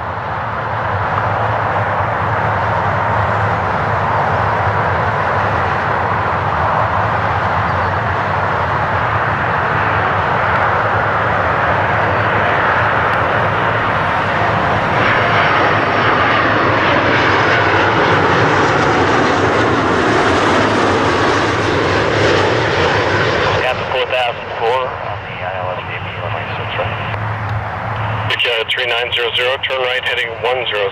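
Jet engines of an Air Canada Airbus A330-300 on final approach, passing low overhead: a steady roar that grows louder, peaks with a rising hiss about two-thirds of the way through, then eases off as the airliner heads down to the runway.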